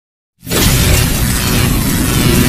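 Channel-intro logo sound effect: a sudden loud wash of crash-like noise over a deep rumble, starting a moment in and then holding steady.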